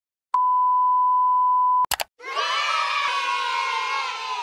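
A steady 1 kHz test-tone beep of the kind that goes with television colour bars, held for about a second and a half. It is followed by two short crackles of static, then a crowd of children cheering and shouting.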